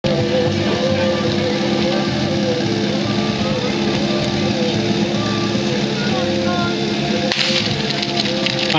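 A small engine running steadily at idle, with a sudden louder rush of noise about seven seconds in, as the team starts.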